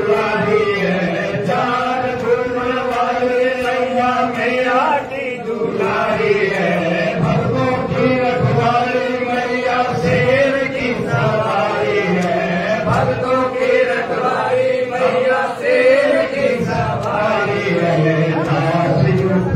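Male voices chanting together in long, drawn-out notes: a devotional aarti chant sung while the lamp is offered to the goddess.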